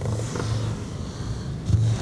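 Steady low hum and hiss of an old lecture recording, with a brief low thump near the end.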